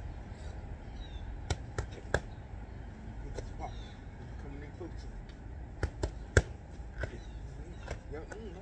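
Boxing gloves smacking into focus mitts in quick punch combinations: three sharp smacks about a second and a half in, a couple of lighter ones near the middle, then another quick run of three, the last the loudest, and one more near the end.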